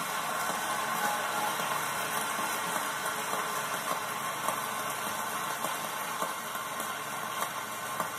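Large conference-hall audience applauding in a standing ovation: dense, steady clapping, heard through a television's speaker.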